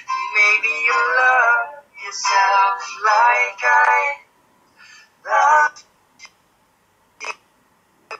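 A man singing to an acoustic guitar, played back through a laptop's speakers and sounding thin, with no low end. The singing breaks off about four seconds in, leaving one short sung phrase and a few brief sounds.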